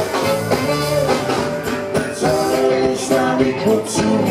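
Live funk band playing, with horns, electric guitars and keyboards over a steady drum beat.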